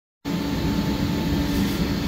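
Steady machine hum with a few constant low tones, starting about a quarter second in.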